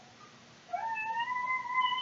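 A pet animal's long, drawn-out cry. It begins under a second in, slides up at the start and then holds one steady pitch.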